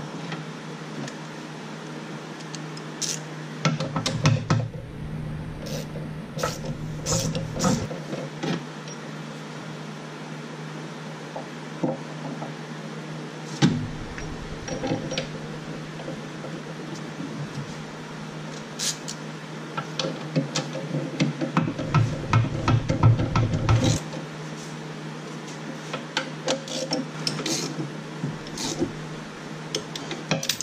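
Hand tools working metal at a motor mount: scattered clicks and clinks as a bolt is dropped in and tightened with a ratchet, with a quicker run of clicks about three-quarters of the way through, over a steady background hum.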